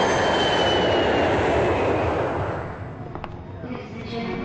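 Twin-engine jet airliner passing low overhead on approach: a loud rush of jet-engine noise with a high whine that slowly falls in pitch, fading away about two and a half seconds in.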